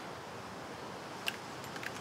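Quiet outdoor ambience, a steady soft hiss, with one small click about a second in and a couple of fainter ticks near the end.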